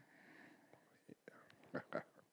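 A man's faint breathing and small mouth sounds close to a handheld microphone, with a few short breathy bursts near the end as he begins to laugh.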